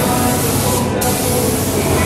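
Gravity-feed air spray gun hissing as it sprays epoxy primer. The hiss cuts off abruptly just before a second in and starts straight up again.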